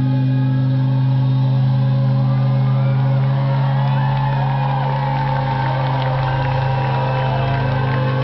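A live band holding a steady low chord at the end of a song. About halfway through, the crowd starts cheering and whooping over it.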